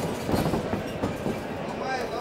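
A flurry of kickboxing strikes: rapid thuds of gloves and kicks landing and feet on the ring canvas, swelling about half a second in, under shouting from the corners and crowd in a large sports hall.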